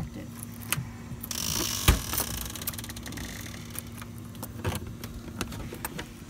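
Keys jangling and clicking in a doorknob lock as it is worked, with scattered small clicks and one sharp knock about two seconds in.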